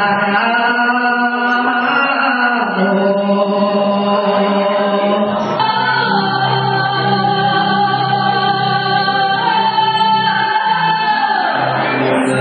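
A woman sings a Mongolian long-song (urtiin duu) into a microphone, holding long, drawn-out notes. A little past halfway it changes abruptly to another woman's long-song, sung over a steady low backing.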